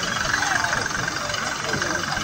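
Busy roadside market hubbub: many background voices mixed with a motor vehicle engine running, steady throughout with no sharp events.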